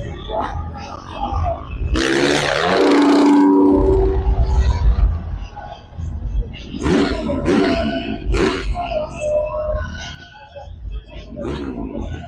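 A large outdoor arena crowd cheering, with a loud swell about two seconds in, and an announcer's voice over the PA.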